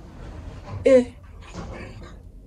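A woman's voice: one short, drawn-out, whiny 'yeah' about a second in, over a low steady rumble.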